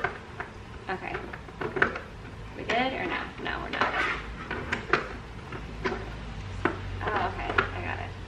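Light clatter and knocks of small objects being picked up and moved around in a car's back seat, with short snatches of indistinct voice between them.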